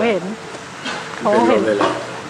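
A person speaking twice briefly, over a steady hiss.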